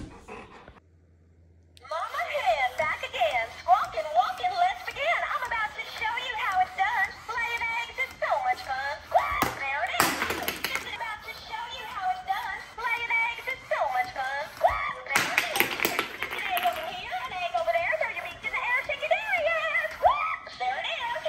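Battery-powered plush dancing hen toy playing its high-pitched sung song through a small speaker, starting about two seconds in and running on. A couple of short knocks come through it, about ten and fifteen seconds in.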